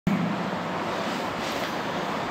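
Steady background noise, an even hiss-like rumble with no distinct events.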